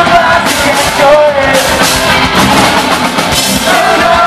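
Post-hardcore band playing live at full volume: drum kit, electric guitars and bass, heard from the crowd in a small club.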